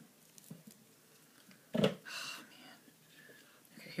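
Hands handling a plastic weather-station display unit: faint clicks, then one sharp knock about two seconds in, followed by a brief breathy sound.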